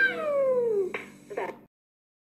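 A high vocal cry sliding steadily down in pitch for just under a second, followed by two short clicks, then the sound cuts off to silence.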